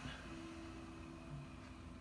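Quiet small-room tone with a faint steady low hum.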